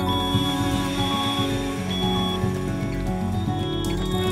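Background music of sustained chords, with short high tones repeating about once a second.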